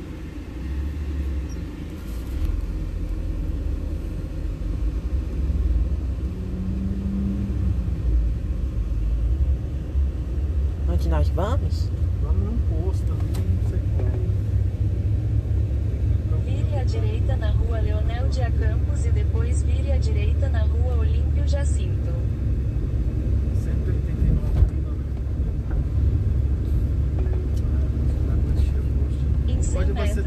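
Low, steady engine and road rumble of a vehicle pulling away from near standstill and picking up speed, heard from inside the vehicle.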